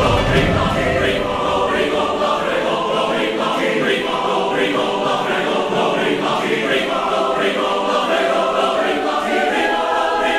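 Trailer music: a choir singing, steady and fairly loud.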